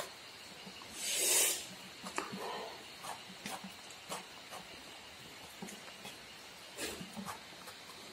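Faint sounds of hands picking through rice, greens and curried pork on a large metal plate: scattered soft clicks, ticks and rustles of leaves, with a short breathy hiss about a second in.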